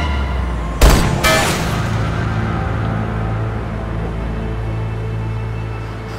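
Dark, tense film score with a low steady drone, broken about a second in by a loud sharp bang, a rifle shot, and a second crack half a second later that rings on briefly.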